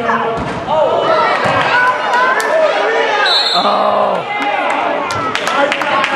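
Basketball bouncing and thudding on a gym floor, with several sharp knocks near the end, among spectators' shouting and chatter that echoes in the large hall.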